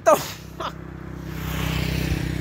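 A brief vocal sound with a falling pitch at the start, then a road vehicle's engine droning low and growing steadily louder as it approaches.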